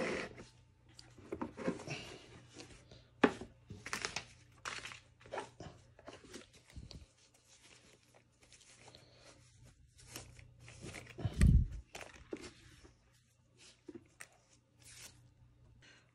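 Handling of a cardboard gift box and a cotton dust bag: intermittent short rustles, scrapes and taps as the lid comes off and the bag is lifted out and opened, with a soft low thump a little past the middle.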